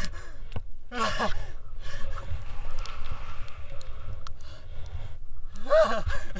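Wind rushing over a body-worn camera's microphone during a rope jump's free fall and swing, a steady low rumble with scattered clicks. The jumper gives a short gasp about a second in.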